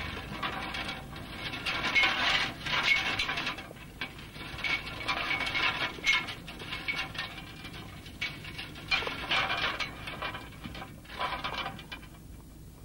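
Loads of harvested crop thrown onto an inclined wire-mesh sieve, clattering and rattling over the metal wires as they tumble down. It comes in four or five bursts of dense rattling, each one to three seconds long, with short pauses between.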